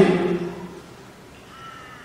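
A person's voice holding a drawn-out syllable that falls slightly in pitch and fades about half a second in, followed by a pause of quiet room tone.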